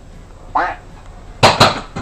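A short voice-like call, then about a second and a half in two loud sharp clacks in quick succession.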